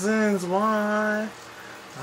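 A man singing unaccompanied, holding a long, steady note that ends a little over a second in, followed by a short pause before the next phrase.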